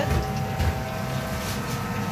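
Steady mechanical drone of commercial kitchen machinery, with a couple of dull low bumps in the first second.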